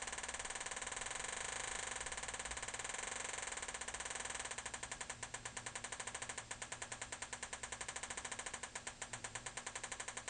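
Homemade metal detector's audio output giving a rapid stream of clicks whose rate changes as gold jewelry is moved at the search coil. The clicking is fast and buzzy at first, slows to about eight distinct clicks a second from about halfway in, and speeds up again near the end.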